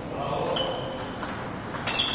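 Table tennis ball being served and rallied: short, sharp pings of the celluloid-type ball hitting bats and table. The loudest click comes near the end.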